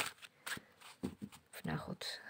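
A tarot deck being handled and shuffled: a sharp snap of the cards right at the start, then a few soft, scattered card clicks.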